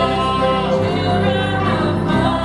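A woman and a man singing a gospel song together as a duet into microphones, holding sustained notes.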